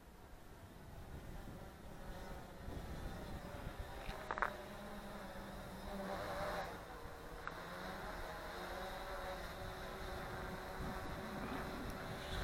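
UpAir One quadcopter drone's propellers buzzing overhead, a steady whine of several tones that grows louder over the first few seconds as the drone comes in.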